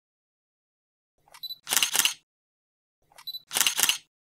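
A camera shutter firing twice, about a second in and again near the end. Each time a short high beep comes first, then a quick run of sharp clicks.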